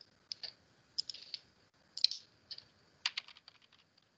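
Typing on a computer keyboard, with scattered single keystrokes and then a quick run of keys about three seconds in.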